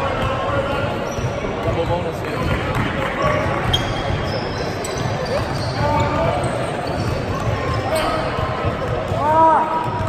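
A basketball bouncing on a hardwood gym floor, under spectators' chatter echoing through a large hall.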